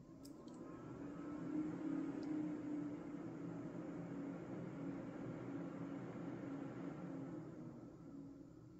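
Desktop PC's cooling fans spinning up as the computer powers back on partway through a BIOS update: a steady whir with a low hum that rises over the first couple of seconds and starts to ease off near the end.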